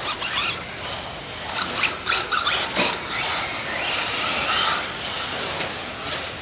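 Radio-controlled off-road buggies running on a dirt track: a motor whine rising and falling over a steady hiss, with a few sharp knocks about two to three seconds in.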